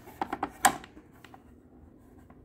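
An IBM 5150 motherboard being flipped over and laid down on a workbench: a run of light clicks and knocks, the loudest a sharp knock about two-thirds of a second in.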